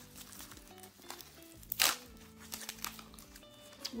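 Protective wrapping crinkling and tearing as it is pulled off a leather handbag by hand, with small crackles and one louder rustle a little under two seconds in. Faint sustained music notes sit underneath.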